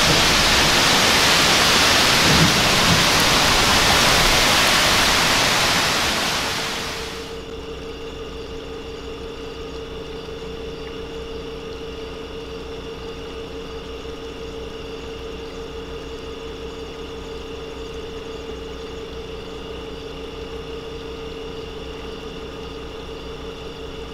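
Heavy rain and strong thunderstorm downburst wind thrashing the trees make a loud, steady rush of noise. About seven seconds in this cuts to a car engine idling steadily, a low even hum heard from inside the car.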